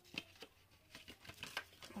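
A few faint, scattered knocks and bumps, neighbours' noise heard through the walls of a small room.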